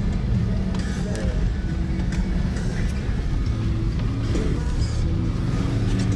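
In-cab sound of a Toyota Land Cruiser FZJ80 driving on a gravel dirt road: the straight-six engine running steadily under tyre and road rumble, with scattered sharp clicks and rattles.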